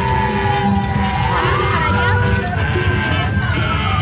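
Emergency vehicle siren wailing slowly: its pitch falls, rises again a little after a second in, holds, then falls toward the end. Crowd chatter and music run underneath.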